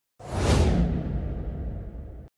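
A whoosh sound effect with a deep rumble under it, for an intro logo animation. It swells in a moment after the start, is loudest about half a second in, and fades as its hiss falls in pitch.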